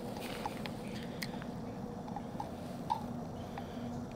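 Quiet, steady background hiss with a few faint, irregular small clicks and crackles.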